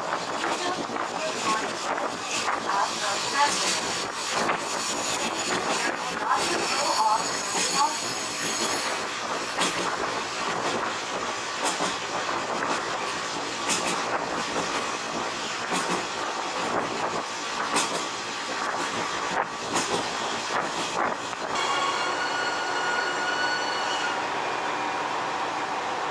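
Diesel railcar running along the line, heard from its open-air deck: steady wheel and wind noise with scattered clicks from the rails. Steel wheels squeal in high tones about a quarter of the way in, and again near the end as the railcar slows into a station.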